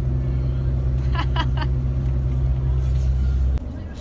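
Coach bus engine and road noise heard from inside the passenger cabin: a loud, steady low drone that cuts off suddenly about three and a half seconds in.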